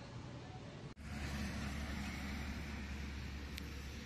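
Quiet room noise that cuts off about a second in, followed by a louder, steady low rumble and hiss of outdoor background noise, of the kind heard beside a road.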